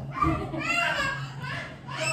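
A child's high voice vocalizing with no clear words, its pitch bending up and down.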